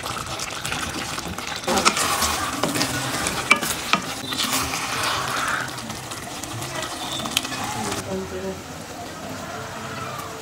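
Wooden spoon stirring sticky, caramelizing coconut and sugar (bukayo) in a stainless steel pot over the flame, with a soft sizzle and a few sharp knocks of the spoon against the pot.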